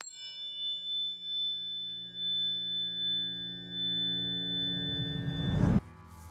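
A sustained ringing tone of several pitches held together starts suddenly and is held steady. A low rushing swell builds and grows louder over the last second, then cuts off abruptly.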